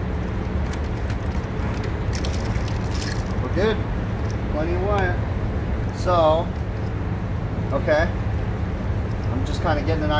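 Steady low background rumble with a few light clicks of wire being handled, and short bursts of a man's muttered voice in the second half.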